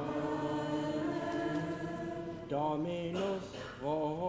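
Latin plainchant sung by a male voice: a long steady reciting note, then a short melodic phrase with the pitch rising and falling about two and a half seconds in.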